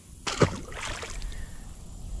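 A short splash as a just-released largemouth bass kicks away at the surface beside a boat, followed by about a second of softer water noise.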